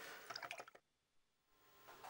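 Near silence: a few faint soft ticks in the first half, then the sound drops out completely for about a second.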